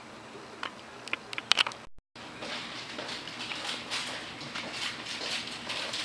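Handling noise: a few light clicks, then, after a brief dropout about two seconds in, steady rustling and scratching scattered with small clicks, as hands move small objects close to the microphone.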